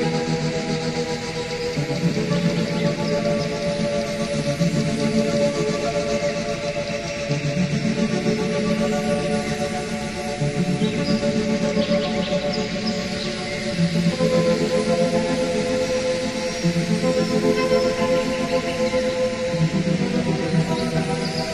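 Background music: slow ambient electronic music of held tones, the chords changing every few seconds.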